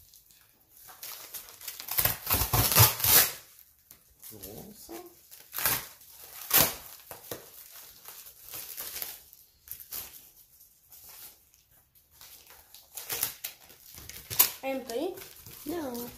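A cardboard shipping box being torn open by hand, with plastic packaging crinkling, in irregular bursts; the loudest tearing comes about two to three seconds in, with a few sharp rips later.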